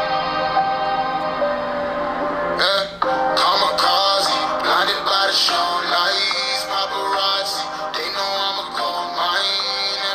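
A rock track with singing played through a Huawei Mate 30 Pro's built-in stereo speakers. It opens on held chords, drops out briefly just before three seconds in, then comes back fuller with the vocals.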